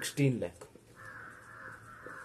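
A brief loud call in the first half second, then a marker writing numbers on a whiteboard: a steady scraping from about a second in.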